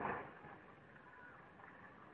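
A single dull bang right at the start, fading within about half a second, over a faint outdoor background.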